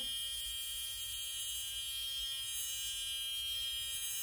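Cordless ProFacialWand high-frequency skincare wand running with its neon-filled glass mushroom electrode pressed to the skin, giving a steady electrical buzz.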